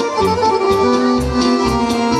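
Accordion-led traditional dance music with a steady beat, played for a folk line dance.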